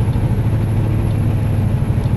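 Heavy truck's diesel engine heard from inside the cab while driving, a steady low pulsing drone.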